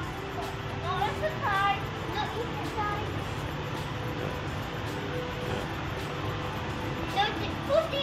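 Public-space ambience: faint voices and soft background music over a steady low hum, with no one speaking close by.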